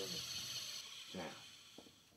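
A handheld electric eraser whirring as it rubs out marks on drawing paper. It fades away in the second half.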